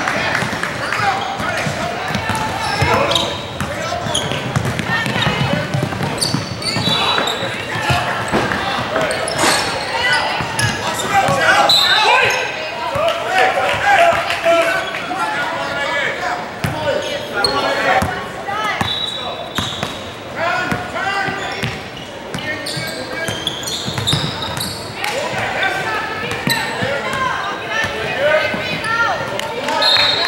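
Basketball game in a large gym: a ball dribbling on the hardwood court with sneakers squeaking, under steady shouting from players and spectators that echoes around the hall.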